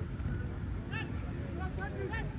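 Distant shouts from football players calling on the pitch: a short call about a second in and another pair near the end, over a steady low rumble.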